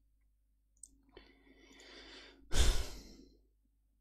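A man breathing close to the microphone: a faint inhale, then a short sigh-like exhale about two and a half seconds in.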